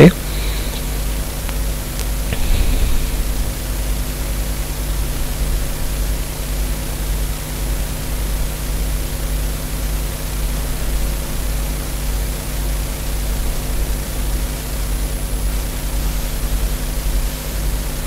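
Steady background noise of the recording: a low electrical hum with a few steady low tones under an even hiss, with no distinct events.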